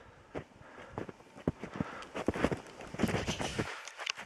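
Footsteps crunching in snow: uneven single steps at first, coming closer together in the last second.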